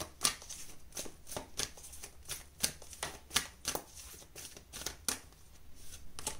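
A deck of oracle cards being shuffled by hand: a run of irregular, quick card snaps and slides.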